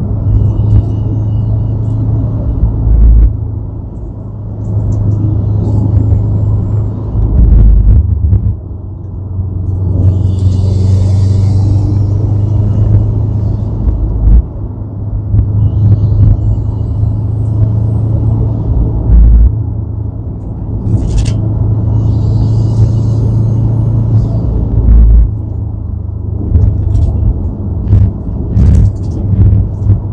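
Car driving at speed: a steady low engine drone under heavy road and wind rumble, swelling and easing with short dips in loudness every few seconds.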